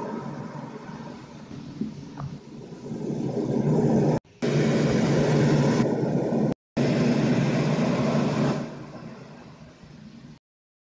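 A low, steady rumbling noise that swells, breaks off abruptly twice, and fades away near the end.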